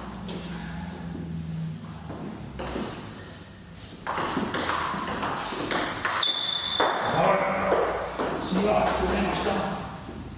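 Table tennis rally: the celluloid ball is struck by rubber paddles and bounces on the table in a run of sharp clicks, starting about four seconds in after a quieter pause between points. A brief high squeak sounds in the middle of the rally.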